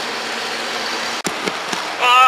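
Steady roadside noise with a low, even engine hum. A sudden click a little past one second in cuts the hum off.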